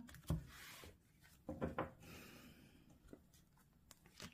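Tarot cards being handled over a cloth-covered table, faint: a soft tap, a brief rub of card stock sliding, then a couple more soft taps.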